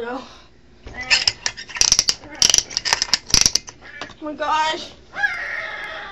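A couple of seconds of dense crackling and clattering, then short cries in a person's voice.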